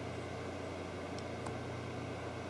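Steady room tone: a low hum with an even hiss underneath and no distinct event.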